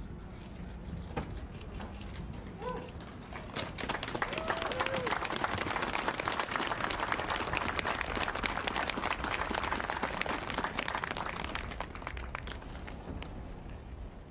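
Outdoor audience applauding, swelling about four seconds in and fading near the end, with a couple of short calls from the crowd near the start.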